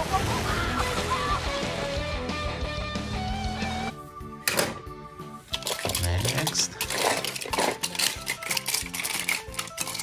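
Film soundtrack music for about four seconds, then it cuts off and small toy cars clatter and click against one another as a hand rummages through a heap of them.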